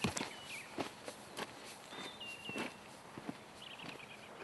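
Faint footsteps crunching on riverbed gravel at an uneven walking pace.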